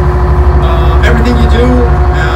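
A boat's engine running, heard inside the cabin as a low, evenly pulsing drone, with voices talking over it.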